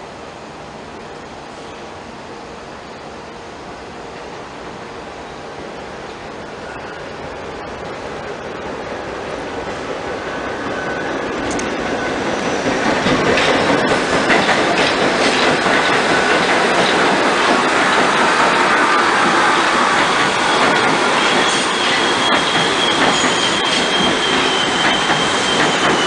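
A New York City subway train approaches and passes close by. Its rumble and wheel noise build steadily for about thirteen seconds, then stay loud with scattered clacks as the cars go by. A high, steady wheel squeal comes in near the end.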